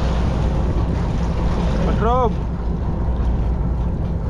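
A fishing boat's engine running steadily under a haze of water and wind noise, with one short high-pitched shout about two seconds in.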